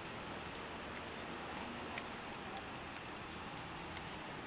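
Steady hiss of city street traffic, with a few faint ticks.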